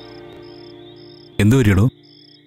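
Crickets chirping in a steady train of short pulses, about three a second, as background music fades out beneath them.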